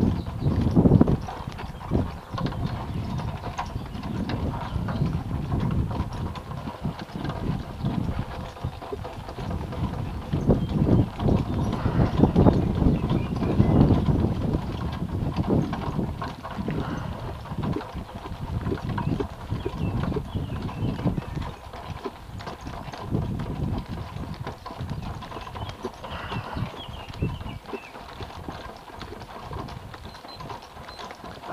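Hoofbeats of a horse pulling a two-wheeled cart along a sandy dirt track, heard from the cart.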